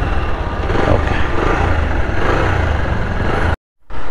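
Bajaj Pulsar 220F's single-cylinder engine running steadily at a standstill, a mechanic holding the throttle grip during an oil change. The sound cuts off suddenly near the end.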